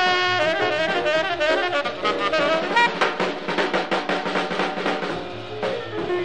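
Jazz quartet playing: tenor saxophone running fast strings of notes over piano, upright bass and drum kit with cymbals.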